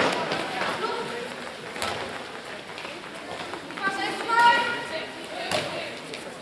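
Voices calling out across an echoing sports hall during handball play, with a couple of sharp knocks of the ball, one about two seconds in and one near the end.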